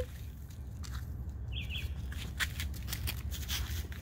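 Quiet outdoor background with a faint low rumble and scattered small clicks, and a short bird chirp of a few quick high notes about one and a half seconds in.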